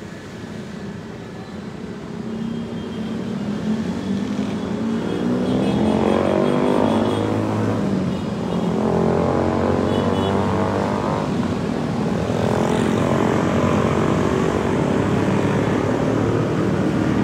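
Engine noise of motor vehicles passing close by. It grows louder over the first six seconds and then holds as a steady drone, with its pitch bending as vehicles go past.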